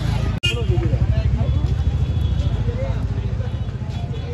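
Street noise: a steady low rumble of traffic with faint voices, broken by a brief dropout about half a second in.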